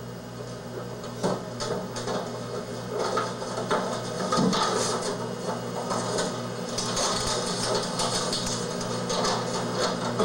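Paper rustling with irregular knocks and clicks close to a microphone as a paper envelope or card is opened and handled at a podium, over a steady low hum.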